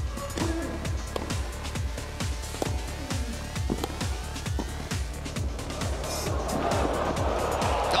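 Background music with a steady thumping beat and rising sweeps. A wash of noise swells over the last couple of seconds.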